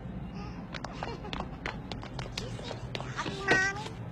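A scatter of sharp clicks and knocks, then about three and a half seconds in a short, loud, wavering high-pitched cry.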